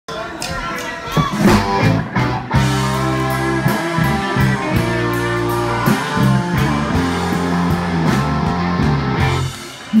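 Live rock band playing loudly: electric guitars, bass and drums, with the music dipping briefly near the end.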